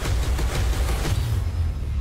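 Film-trailer sound design: a hit at the start, then a rising noisy swell over a steady low bass rumble.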